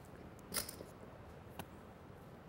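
Quiet room tone with two faint clicks of poker chips, one about half a second in and a softer one near the end.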